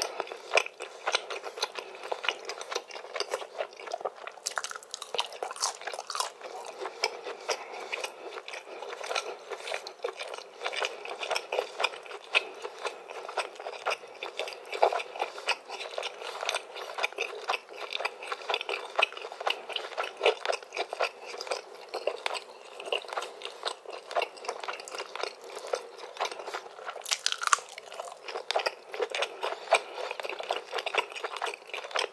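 Close-miked chewing of cheesy grilled chicken: a dense, steady run of wet mouth clicks and crunches.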